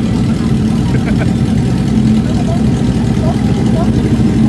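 Motorcycle engines idling steadily, a continuous low rumble.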